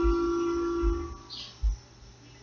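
A single held instrument note ringing on with its overtones, fading out about a second in and leaving a brief lull in the music. Soft low thumps sound beneath it.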